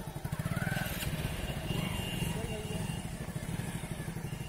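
Hero Splendor motorcycle's single-cylinder four-stroke engine idling steadily with an even, rapid beat while the bike stands still.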